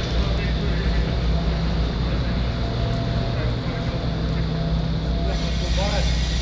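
Street noise dominated by a steady low engine rumble that holds level throughout, with a faint voice or two near the end.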